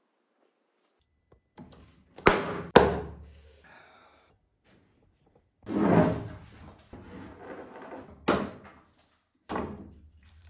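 Knocks and thumps of a white mould board being worked loose and lifted off a cast epoxy table: two sharp knocks about two seconds in, a longer thud with scraping around six seconds, and more knocks near the end.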